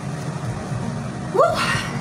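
A woman's breathy 'woo' exclamation, rising in pitch, about a second and a half in, after a stretch of steady hiss.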